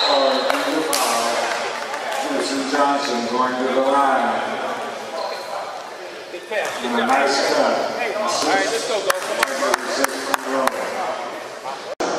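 Men's voices calling out in an echoing gymnasium, then a basketball bouncing on the hardwood floor, a quick run of bounces about nine seconds in.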